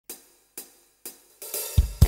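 Drum kit hi-hat counting in the song: three sharp ticks about half a second apart. Then a cymbal wash builds and a low drum hit comes near the end as the band enters.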